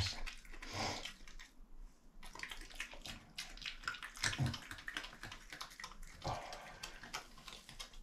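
European badger chewing and crunching food scraps off the floor: a fast, irregular patter of small crunches and clicks, with a few louder soft knocks.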